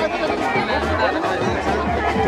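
Crowd chatter, many voices talking and calling out at once, over music with a deep bass.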